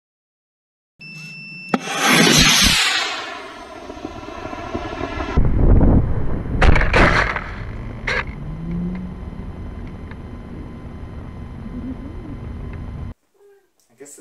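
Model rocket launch: a short beep and a click, then the rocket motor firing with a loud rushing hiss that peaks and fades within about two seconds. The sound then changes to the rocket's onboard camera: wind rushing past in flight, with several loud knocks.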